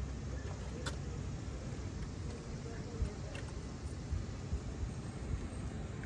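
A few faint light clicks and handling sounds as a rubber coolant hose is worked off the engine, over a steady low outdoor rumble.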